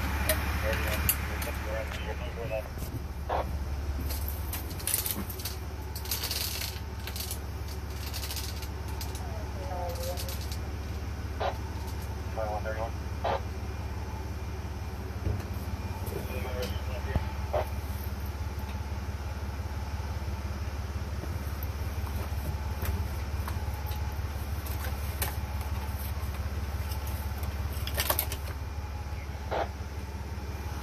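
Fire engine's diesel engine idling steadily, heard from inside the apparatus, with scattered clanks and clicks of doors and equipment; the sharpest clank comes near the end.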